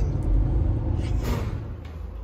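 Low, steady rumble of a vehicle being driven, heard from inside the cab: engine and road noise, fading away near the end.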